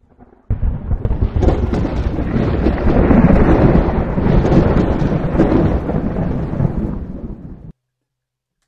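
Rolling thunder, a storm sound effect, that comes in suddenly about half a second in, rumbles heavily and fades away near the end.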